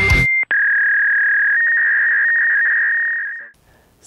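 Heavy electric-guitar intro music cuts off, then a steady high electronic tone with a faint click holds for about three seconds and fades out.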